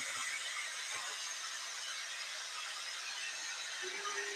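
Electric heat gun blowing steadily with an even, hissing rush of air, drying acrylic paint on a wooden cutout.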